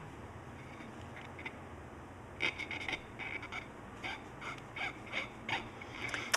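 A cotton swab scrubbing over a small surface-mount chip and its circuit board: faint, short, irregular strokes, a few per second, starting about two and a half seconds in.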